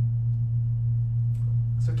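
Steady low electrical hum, one unchanging tone with nothing else over it: mains hum in the sound system's audio feed.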